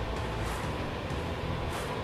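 1970 Ford Mustang Mach 1's air-conditioning blower running with the ignition on, a steady rush of air from the dash vents, super strong.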